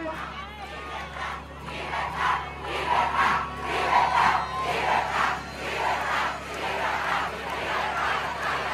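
A large crowd shouting together, growing louder about a second and a half in.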